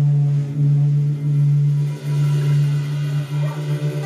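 A live country band playing an instrumental stretch between sung lines, with fiddle, guitars and drums, over a loud low note held throughout that dips briefly a few times.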